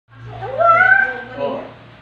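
A high-pitched drawn-out vocal call that rises, holds, then slowly falls, followed by a shorter second call, over a steady low hum.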